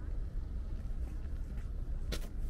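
Steady low rumble of wind buffeting the microphone outdoors, flickering without any clear pattern.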